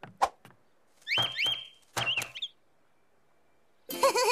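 A sharp knock, then a cartoon pet bird chirping in two short bursts of quick rising squeaks.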